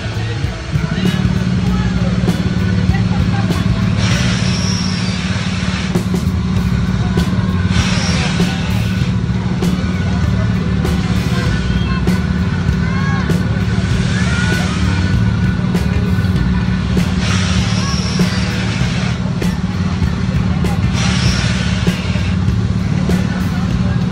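Drop-tower ride in operation: a steady low machine hum sets in about a second in. Every few seconds a rushing hiss comes as the seat carriage rises and drops.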